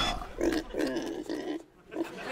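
A pig grunting: a quick run of about four short grunts in the first second and a half.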